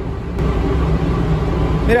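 Paper towel wet with thinner wiped across a painted car door: a steady rubbing hiss from about half a second in, over a low rumble.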